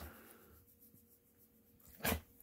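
Near silence, with a faint scratchy rustle of a hand rubbing a Newfoundland dog's long, thick belly fur.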